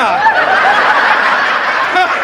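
A live audience bursting into laughter together, a loud wave of many voices that starts suddenly and holds steady.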